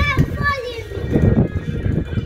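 A child's high voice calling out briefly in the first second, its pitch sliding down, over background music with a low, uneven thumping.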